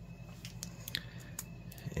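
Faint handling sounds from a Kodak EasyShare C143's plastic lens assembly being picked up and turned in the fingers: a few light, scattered clicks over a low steady hum.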